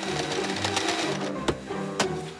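Background music with a fast mechanical rattle over it, like a machine clattering rapidly, and a sharp click about one and a half seconds in.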